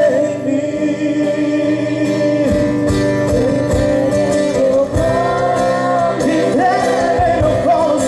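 Live worship band playing a gospel song: voices singing over acoustic guitar, with cajón-style percussion beats coming in about two and a half seconds in.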